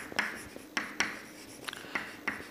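Chalk writing on a chalkboard: several short, sharp taps and scratches as the letters are written.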